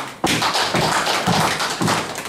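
A roomful of people clapping in applause, starting suddenly a moment in and running about a second and a half.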